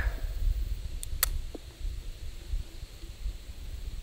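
Low steady rumble with two short, sharp clicks about a second in.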